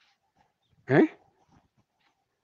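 A single short questioning "eh?" from a voice, rising in pitch, about a second in; otherwise quiet.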